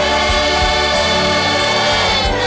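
Gospel choir singing with instrumental backing, holding a long sustained chord.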